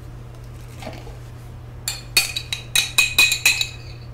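A metal spoon clinking against the inside of a glass jar while scooping out sauce: after a quiet start, a quick run of about eight sharp, ringing clinks in the second half.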